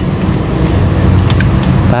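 Steady low rumble of an engine running in the background, with a few faint metallic clicks about halfway through.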